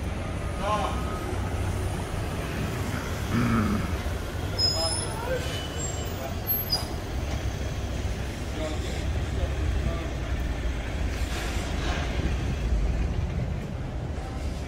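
City street ambience: a steady low rumble of traffic and vehicle engines, with brief snatches of passers-by talking.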